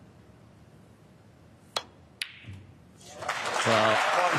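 Snooker cue tip striking the cue ball with a sharp click, then about half a second later a second sharp click as the cue ball hits a red, followed by a soft knock as the red drops into the pocket. Audience applause swells up near the end.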